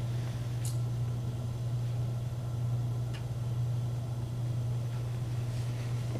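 Room tone dominated by a steady low hum, with a couple of faint clicks, one about a second in and one about three seconds in.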